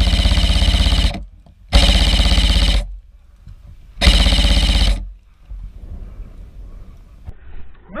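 Three bursts of full-auto fire from an Elite Force/VFC Avalon VR16 Saber Carbine M4 airsoft electric rifle (AEG), each about a second long, the shots running together into a rapid, even buzz, with short pauses between bursts.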